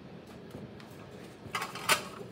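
A quiet steady background, then a few short clattering knocks of something being handled, starting about one and a half seconds in, with the loudest one just before the end.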